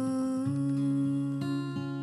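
Acoustic guitar picking slow chords in a soft ballad, with fresh notes plucked about half a second in and again a little after the middle. A held vocal note carries over into the first half second.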